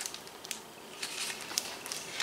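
Pages of a large hardcover picture book being turned and handled: a few short paper rustles and light knocks, the loudest cluster about a second in.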